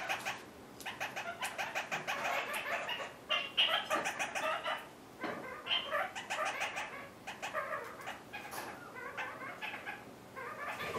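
Kakariki parakeets chattering in quick runs of short notes, with a couple of brief lulls, about half a second in and again midway.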